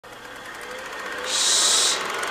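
A person shushing: one sustained, loud "shh" hiss about a second in, lasting under a second, after a faint build-up.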